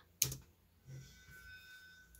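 A sharp click as the computer is clicked to start video playback, then a softer knock about a second later. Faint steady high tones from the start of the video's audio follow in the second half.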